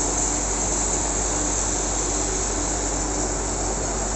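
Steady background noise: an even hiss with a constant low hum underneath, and no distinct events.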